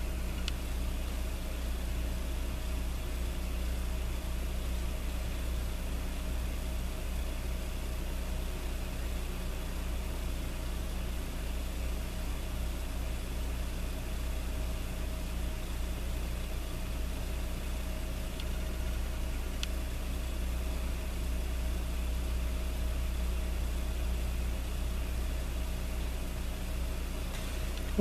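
A steady low hum with an even hiss over it, unchanging throughout, with a faint tick or two about two-thirds of the way in.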